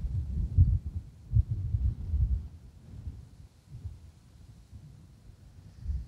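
Wind buffeting an outdoor microphone: irregular low rumbling gusts, heaviest in the first couple of seconds and dying down toward the end.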